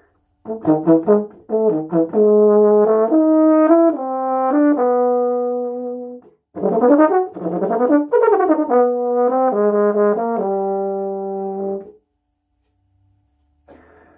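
Solo euphonium playing two phrases, each starting with quick notes and settling into longer held notes, with a short breath between them; the playing stops about twelve seconds in.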